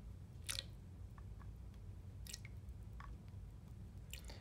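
Faint squirts and drips of water from a plastic syringe rinsing a small glass cuvette over a plastic beaker, with a few short clicks and splashes, the sharpest about half a second in. A low steady room hum lies underneath.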